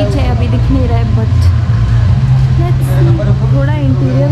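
Voices talking over a loud, steady low rumble.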